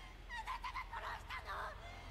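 A woman's high-pitched, strained voice speaking in short Japanese lines from the anime film's soundtrack, played back at a low level.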